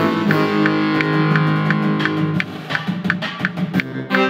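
Instrumental music: sustained low notes under a regular pulse of short high notes, about three a second. The pulse breaks off a little past the middle and then picks up again.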